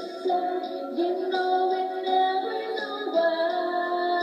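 A female voice singing into a microphone, holding long notes, played back through small computer speakers so it sounds thin with no bass.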